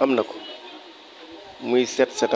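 A man speaking French in short, halting phrases, with a pause of about a second and a half in the middle where only a faint steady background hum is heard.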